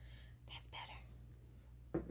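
Faint whispered speech from a woman, a few breathy syllables about half a second in, over a low steady hum.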